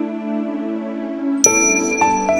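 Music of bell-like ringing tones: one held note rings on and slowly fades, then a bright new chime is struck about a second and a half in and rings on.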